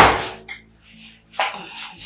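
A wooden door banging shut with one loud thud that fades over about half a second, followed by a small click about half a second in.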